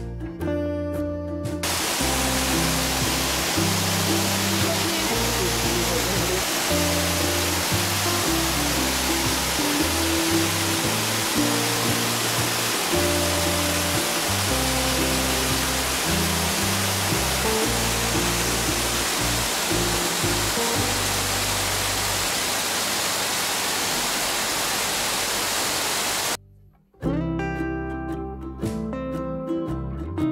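Waterfall rushing close by, heard from behind the falls as a dense, steady roar of water, over acoustic guitar background music. The water noise starts about two seconds in and cuts off suddenly near the end, leaving only the music.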